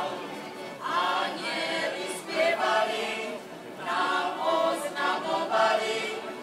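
A choir singing, in phrases with a short lull about halfway through.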